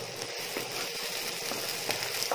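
Chopped onions frying in oil in a nonstick pan, giving a steady sizzle, while a wooden spatula stirs them with a few faint scrapes.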